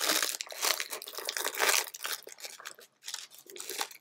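Plastic shrink-wrap being torn and crinkled by hand off a Blu-ray case, a dense crackle that thins to a few faint crinkles near the end.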